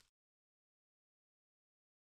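Silence: the sound cuts out completely just after the start.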